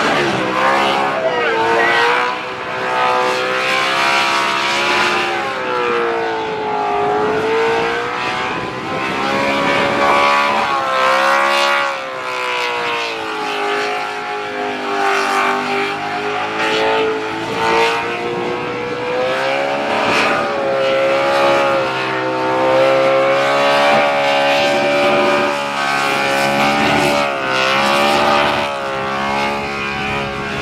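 Holden VK Commodore burnout car's V8 held at very high revs for a long burnout. Its high, singing note rises and dips every few seconds as the throttle is worked, with the hiss of the spinning rear tyres underneath.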